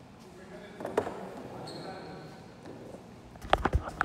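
Basketball bouncing on a hardwood gym floor in a large echoing hall: a single bounce about a second in, then several quick, loud bounces near the end.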